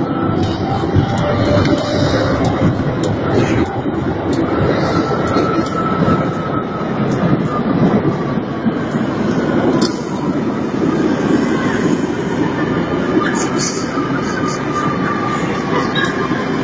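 Metro train pulling into an underground station: a loud, steady rumble of wheels on rail, with faint whining tones that slowly fall in pitch as it slows.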